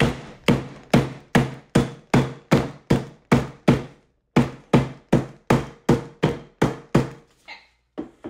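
Wooden rolling pin pounding a shortbread cookie inside a plastic zip bag on a tabletop, crushing it into crumbs: a steady run of blows about two and a half a second, with a brief pause about halfway, then two lighter taps near the end.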